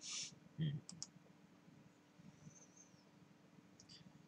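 Two quick pairs of clicks from a laptop being used, about a second in and again near the end. These follow a short breath and a brief murmur at the start, over quiet room tone.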